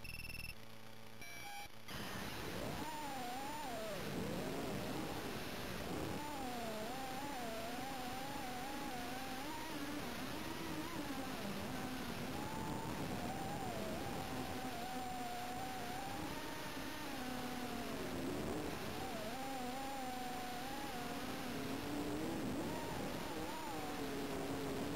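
Micro FPV quadcopter's brushless motors whining, their pitch rising and falling continually as the throttle changes in flight, starting about two seconds in after a few brief steady tones.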